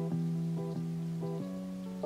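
Soft instrumental background music: a calm melody of sustained notes that changes pitch about every half second.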